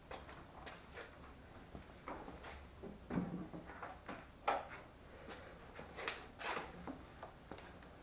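Footsteps on a concrete garage floor with irregular light knocks and clicks from handling. The loudest knock comes about four and a half seconds in.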